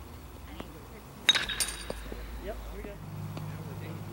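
Baseball bat hitting a pitched ball in batting practice: one sharp crack about a second in that rings briefly.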